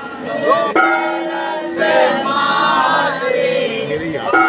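A group of voices singing a devotional aarti hymn, with held notes and gliding pitch. Bells ring in a fast, steady rhythm behind the singing.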